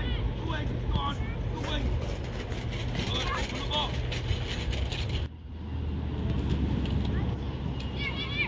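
Children calling and shouting during soccer play, short high-pitched calls over a steady low rumble. The sound dips briefly about five seconds in.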